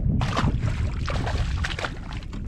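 A largemouth bass splashing back into the water as it is released over the side of the boat, just after the start, over steady wind noise on the microphone.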